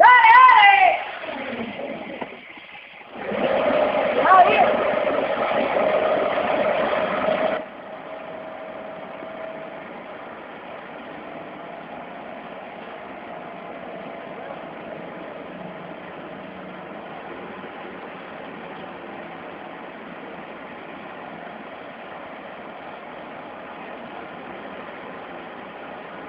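A motor vehicle's engine running, louder and straining for a few seconds about three to seven seconds in, then settling to a steady, quieter run. It is pulling an uprooted tree root ball on a rope. A brief voice is heard at the very start.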